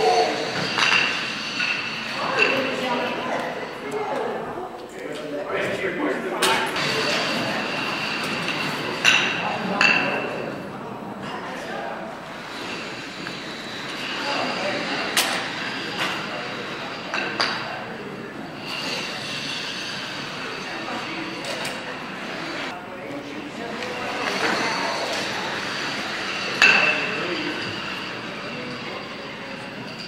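Floor shuffleboard discs sliding over a wooden hall floor and clacking against other discs, several sharp knocks spread through, the loudest about nine seconds in and again near the end, echoing in the large hall; voices murmur in the background.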